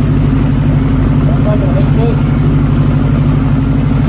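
A 1983 Honda CB1100F's JES-built air-cooled inline-four idling steadily on its CR carburetors, freshly tuned on the dyno.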